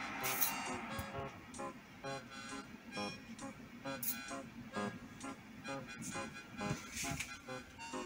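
Quiet background music: a melody of short, separate notes.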